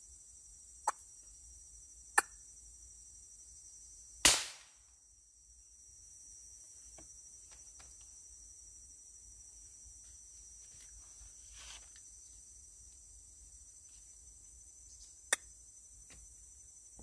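A single air rifle shot about four seconds in, the loudest sound, with a short fading tail. A few fainter sharp clicks come before it and near the end, over a steady high drone of insects.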